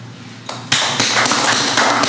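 A group clapping and banging on a table in a rapid clatter of sharp taps and thuds, starting suddenly about two-thirds of a second in.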